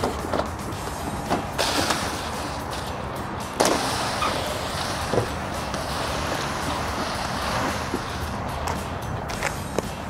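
Flat fire hose paying out of a fire engine's crosslay hose bed and dragging across concrete: a steady scraping rush with a few sharp knocks, the clearest about three and a half seconds in.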